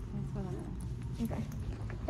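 Footsteps on a hard store floor over a steady low background hum, with a short spoken "okay".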